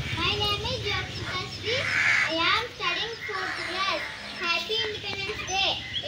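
A young girl speaking continuously in a high voice, reciting.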